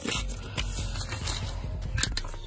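Handling noise: rustling and light knocks as a phone camera is moved about inside a car, with music playing faintly underneath.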